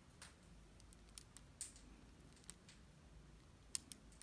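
Faint, scattered small clicks from a fingertip pressing a laptop keyboard ribbon cable and its plastic locking clip into the motherboard connector. Two sharper clicks come close together near the end.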